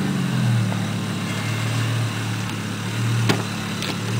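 Volvo V70's five-cylinder engine idling cold shortly after a hard, rough start, a steady low drone that swells slightly. About three seconds in, a sharp click as the driver's door latch opens.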